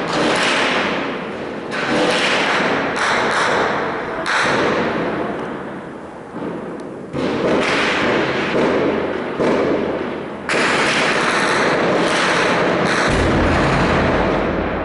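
Combat reports echoing between buildings: about eight sharp, loud shots or blasts a second or more apart, each dying away over about a second. In the last few seconds the noise runs on more steadily, with a deeper rumble near the end.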